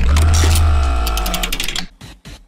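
Transition sound effect between news items: a sudden deep bass hit under sustained musical tones and a rapid mechanical-sounding ticking, fading out shortly before the next item begins.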